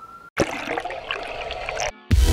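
Rushing, hissing transition sound effect, like running water or a flush. It starts abruptly about a third of a second in and cuts off just before the end, leading into the logo intro.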